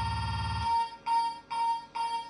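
Electronic dance music from a DJ mix: a held high tone over a pulsing bass beat. The bass drops out about two-thirds of a second in, and the tone is then cut into three short stabs.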